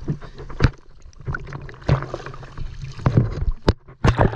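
Shallow river water splashing and sloshing close to the microphone, with several sharp knocks scattered through it.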